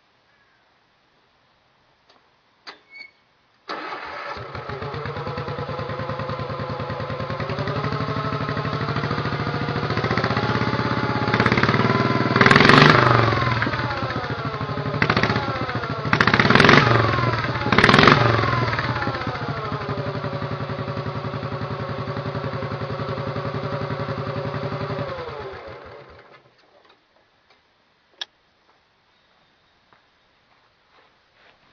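Sears garden tractor engine catching after a brief crank about four seconds in, run up, then revved sharply four times before settling back to a steady idle and being shut off a few seconds before the end. It runs freshly oil-changed, and the owner's verdict is that it still runs like a champ.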